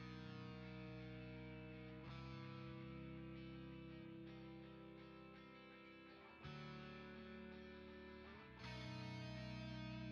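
Quiet background music: held guitar chords with an effects-laden tone, moving to a new chord every two seconds or so.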